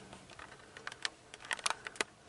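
Faint, irregular light clicks and scratches of bearded dragons' claws on a bark log and on each other as the stacked lizards shift about.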